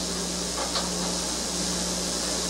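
Steady hiss with a low, even electrical hum: the background noise of an old black-and-white broadcast recording's soundtrack.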